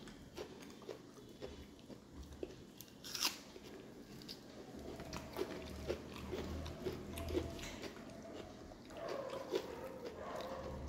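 Close-miked chewing of a mouthful of rice and fish curry, with small wet mouth clicks throughout and one short, louder crunchy burst about three seconds in.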